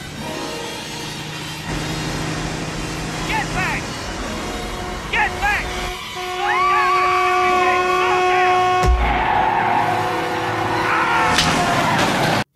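Film soundtrack of a car crash scene. Short voices inside a moving car come first. From about six seconds a vehicle horn blares steadily while a woman screams. A sharp crash near nine seconds marks a passing truck striking the car, with screaming after it.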